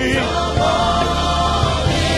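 Live gospel worship music: voices hold one long chord over a steady bass accompaniment.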